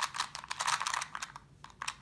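Rapid clicking of a Rubik's Clock puzzle's wheels being turned, front and back dials at the same time; the clicks thin out near the end.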